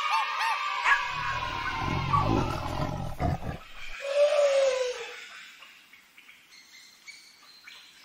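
Short outro jingle: music mixed with cartoon animal sound effects, ending in a single falling tone about four seconds in and then fading away.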